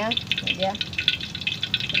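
Hot cooking oil crackling and spitting in a wok over a wood fire, a dense run of fine rapid ticks. The oil is at frying heat, ready for the potatoes.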